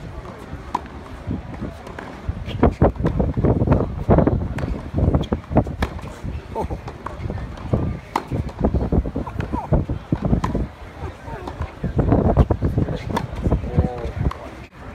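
People talking close to the microphone, over the sharp pops of tennis balls being struck by racquets in a practice rally.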